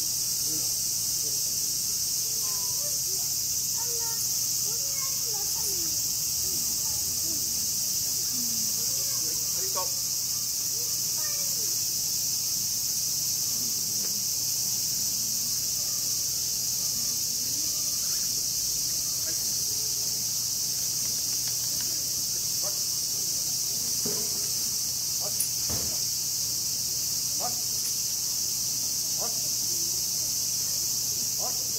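Cicadas shrilling in a steady, unbroken high-pitched summer chorus, with faint distant voices under it and a single sharp click near the end.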